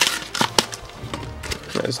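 Plastic and cardboard blister-pack packaging crinkling and crackling as trading cards are pulled out by hand, with a few sharp crackles near the start and about half a second in, over background music.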